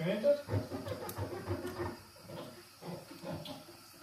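Bell peppers rubbed together, squeaking as if made of plastic, with a woman laughing.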